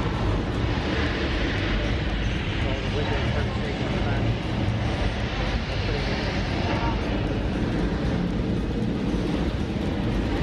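Recorded sound of a Saturn V rocket launch played back through the exhibit's speakers during the Apollo 8 launch re-enactment: a loud, steady, deep rumble that does not let up.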